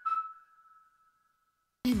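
A single held electronic tone closing an advertisement, stepping slightly down in pitch and fading out over about a second, followed by dead silence; the next advertisement's music and voice cut in near the end.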